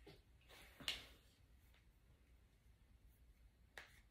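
Tarot cards being handled: a short swish of cards sliding about half a second in, ending in a sharp card snap near one second, then a single faint click near the end.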